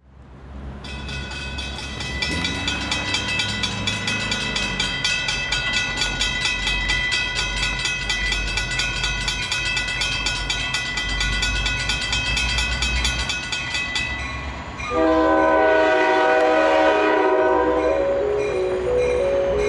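Railroad train rumbling, with steady high ringing tones and a fast, even ticking over it. About fifteen seconds in, a louder locomotive air horn chord starts and holds.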